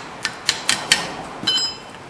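Steel wrench tapping on a rusted rear brake caliper bracket to knock out a stuck old brake pad: four quick metal taps in the first second, then a ringing metal clink about a second and a half in.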